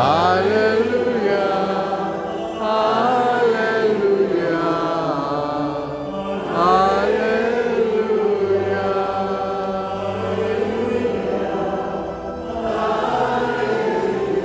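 A voice sings a slow, chant-like liturgical melody in long phrases with short breaks between them, over sustained low keyboard notes.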